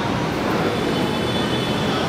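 Steady crowd noise from spectators around a kickboxing cage, a dense hubbub with no single blow standing out.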